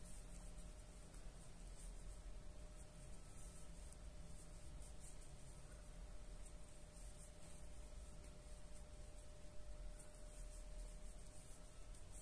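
Near silence: faint room hum with a soft, irregular rustle of yarn being drawn through by a crochet hook as stitches are worked.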